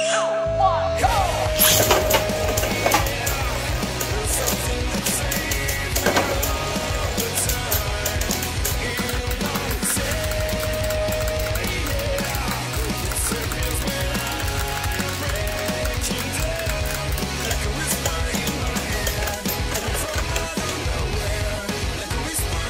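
Background music over the spinning and clattering of two Beyblade Burst tops clashing in a plastic stadium.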